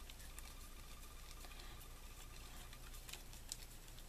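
Faint rustling and soft small ticks of a paper spiral being rolled up tightly by hand into a rolled paper flower, with one slightly louder tick near the end.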